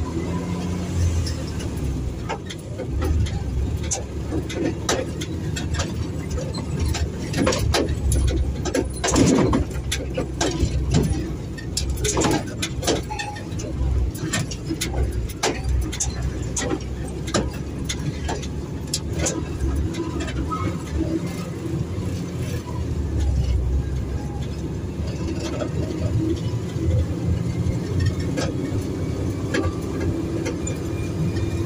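Truck engine running and road noise heard from inside the cab while driving, with frequent irregular rattles and knocks from the cab.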